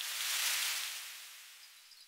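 Whooshing noise sound effect: a rushing hiss that swells over the first half second and fades away by the end.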